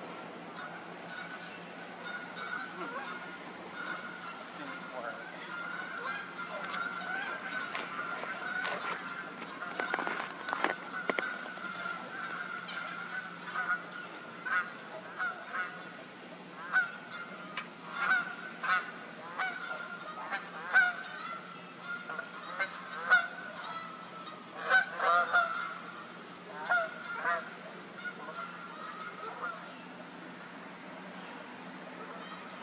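Repeated short honking bird calls, sparse at first and coming thick and fast from about halfway through, over a faint steady background tone.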